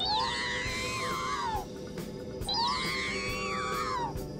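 Synthesized sci-fi starfighter sound effect, a swooping electronic tone that rises and then falls in pitch, heard twice in the same shape over a steady low drone.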